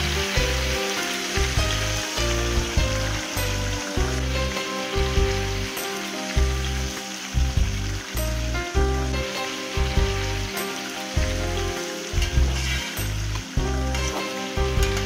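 Lemon pieces frying in hot gingelly (sesame) oil, a steady sizzling hiss as they are tipped into the pan and stirred with a metal spoon. Background music with a steady low beat plays over it.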